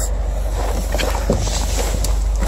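Wind buffeting the phone's microphone outdoors: a steady rumbling rush with a few faint handling clicks as the phone is moved.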